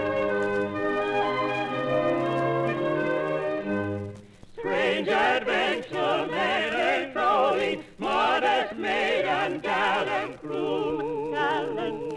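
A theatre orchestra plays a short introduction of held chords. About four seconds in, operatic singers enter with strong vibrato, singing in short phrases with brief pauses between them. The sound comes from a 1940s radio broadcast recording.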